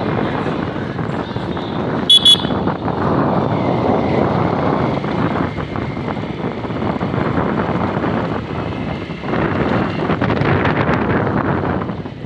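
Motorcycle riding along a town street: steady engine and wind noise, with two quick horn beeps about two seconds in.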